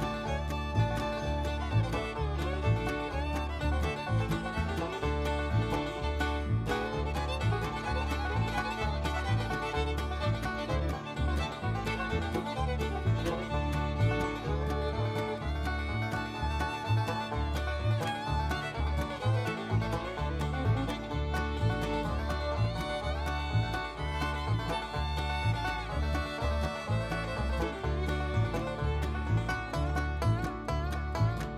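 Bluegrass background music with banjo and fiddle over a steady, even bass rhythm.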